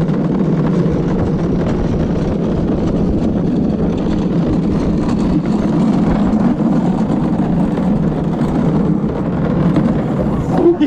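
Steady rolling rumble of a gravity luge cart's wheels on an asphalt track at speed, mixed with wind rushing over the microphone.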